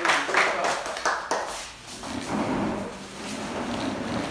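A small group of people applauding with hand claps that die away about a second and a half in.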